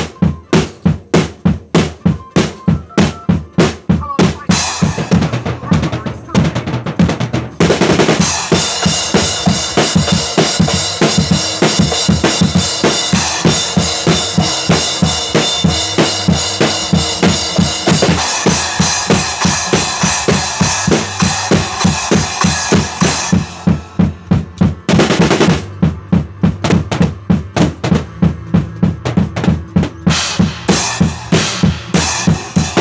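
Acoustic drum kit played in a fast, driving groove: snare, bass drum and toms struck in a steady run of sharp hits. About eight seconds in the cymbals crash continuously under the hits in a thick, ringing wash, which drops away a little after twenty seconds, leaving the sharp strokes again.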